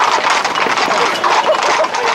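Hooves of a tight group of Camargue horses clip-clopping on the road, many steps overlapping into a dense clatter, with voices among them.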